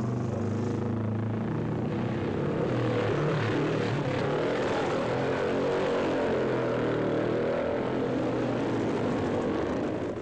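Racing motorcycle engine running hard at high revs, its note rising and falling without a break.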